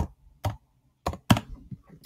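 Computer keyboard keys tapped as a typed character is deleted and retyped: about five separate short keystrokes spread over two seconds.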